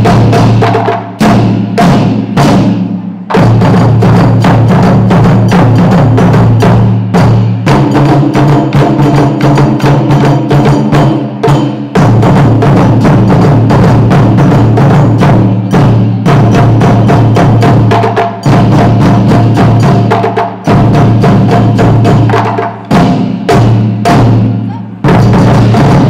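Live drum ensemble playing dense, loud strikes on snare drums and large barrel drums, over a band's sustained low chords that change every few seconds.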